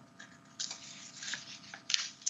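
Soft rustling handling noise close to the microphone, with a few small clicks and a sharper click near the end.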